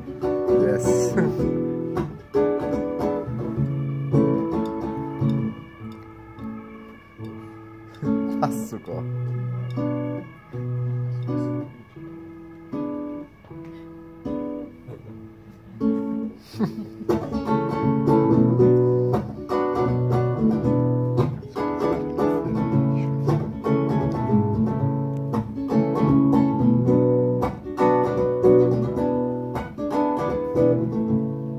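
Acoustic guitar played solo: picked notes and chords, softer from about five seconds in, then fuller and louder from about sixteen seconds in.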